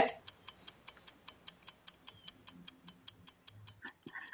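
A timer ticking fast and evenly, about five ticks a second, counting down the answer time.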